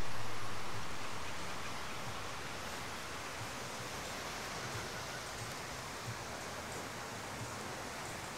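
Quiet, steady seaside ambience: an even hiss of breeze and gentle waves on a rocky shore.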